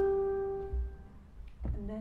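Piano notes of a fast rising run ringing on and fading away, held together on the sustain pedal.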